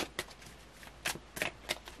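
A tarot deck being shuffled by hand: a string of short, irregular card clicks and slaps, about seven of them, the sharpest right at the start.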